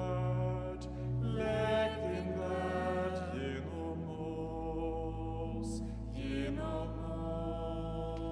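A slow, chant-like sung prayer response over held low accompanying notes, with the sung phrases entering about one and a half seconds in and again near the end.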